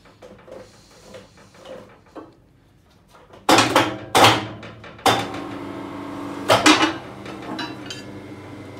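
Steel rebar clanking as it is set against the pins of an ICARO rebar bender's table, then the machine's motor and gearbox running with a steady hum while the table turns and bends the bar, with a few more metal clanks.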